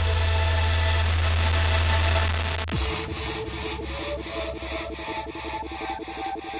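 Happy hardcore electronic music: a sustained deep synth bass note under held higher synth tones, which drops away in a quick falling sweep about three seconds in. The synths then pulse in a fast, even chopped rhythm.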